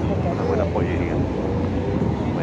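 Steady low rumble of street traffic, with voices mixed in.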